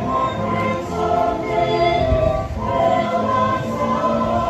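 A choir singing a Christmas carol live, voices together holding sustained notes.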